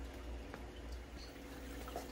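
Quiet, steady low hum with faint water trickling, as from AeroGarden hydroponic units with their pumps circulating water, and a tiny click near the end.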